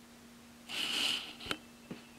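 A short puff of breath through a person's nose, a stifled laugh, about a second in, followed by a single small click.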